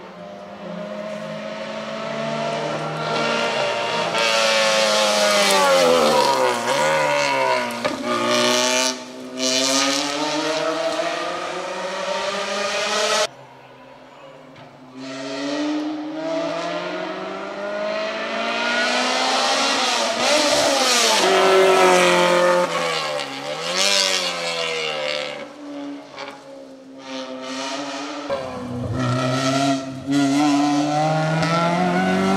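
Lotus Elise race car's engine at full throttle on a hillclimb, pitch rising through the gears, dropping sharply as it shifts down for a bend, then climbing again as it accelerates away. This happens twice, with a sudden break in the sound about 13 seconds in.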